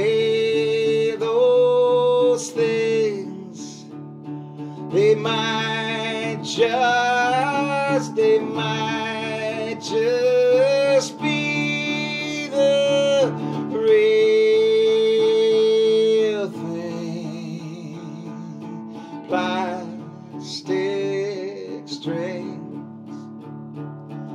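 A man singing long, held notes, some sliding up in pitch, over sustained chords on an acoustic guitar strung with plastic strings.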